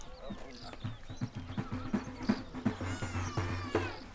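Rapid low thumps in an uneven rhythm, with voices calling out over them.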